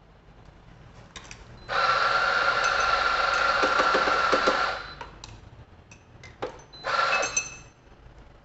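Espresso machine group head flushing: a hiss of water for about three seconds, then a second short burst near the end, with clicks of the portafilter being handled.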